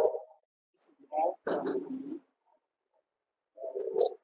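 A lecturer's speech broken by pauses, with two short runs of words and dead silence between them.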